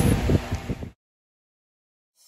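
A few soft knocks and rustles for just under a second, then the sound cuts off to dead silence for the rest of the time.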